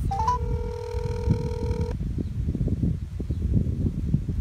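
Phone on speakerphone sounding a few quick rising beeps and then one long steady tone of about a second and a half, a call tone as a call is placed back. A low rumble runs underneath.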